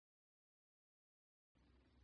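Near silence: a pause with no sound, and only a very faint hiss in the last half second.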